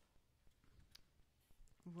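Near silence in a pause between spoken phrases, with one faint click about halfway through. Speech starts again at the very end.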